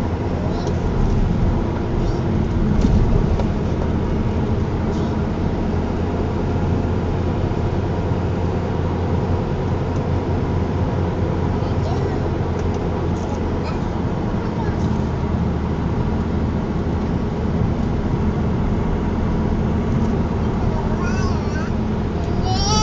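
Steady engine and tyre hum heard from inside a car's cabin while driving at an even speed. A few short, high squeaks sound near the end.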